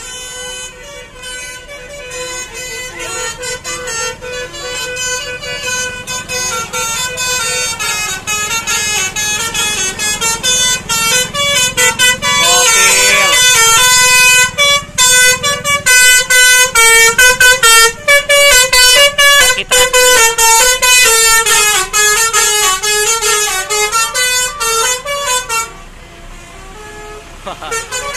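Tourist bus "basuri" telolet horn, a multi-tone musical air horn, playing a quick melody of stepped notes. It builds up over the first half, is very loud through the middle, and stops a couple of seconds before the end.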